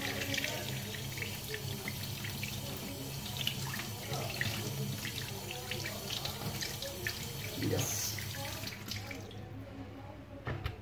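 Tap water running into a stainless steel sink and splashing over a gutted sardine as it is rinsed by hand. The hiss of the water drops away near the end.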